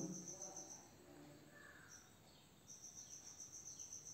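Near silence: faint room tone with a high-pitched insect trill, typical of a cricket, that breaks off for about two seconds in the middle and then resumes.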